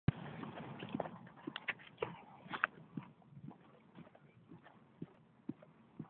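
Footsteps on a concrete sidewalk, about two a second, picked up by a handheld phone while walking. A soft rushing noise lies under the first two seconds.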